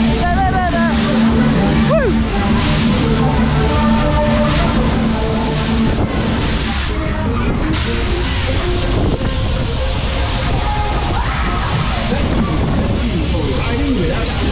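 Loud fairground ride music playing on board a spinning funfair ride, with wind rushing over the microphone and riders' voices now and then, one falling shriek about two seconds in.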